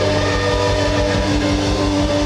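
Live indie rock band playing a loud, held chord of several steady notes over a regular low pulse of bass and drums.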